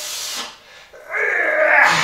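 A man breathing hard under a barbell squat: a short hissing breath at the start, then about a second in a long, loud, strained blowing-out of breath as he drives up out of the squat.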